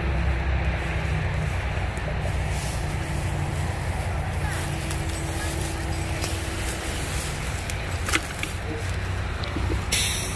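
Low, steady rumble of idling emergency-vehicle engines, with faint voices in the background. A single sharp click comes about eight seconds in.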